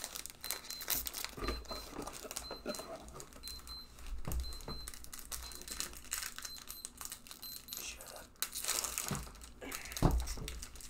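Pokémon TCG booster pack wrappers crinkling and tearing as the packs are opened, and trading cards rustling as they are handled, in a run of irregular quick crackles.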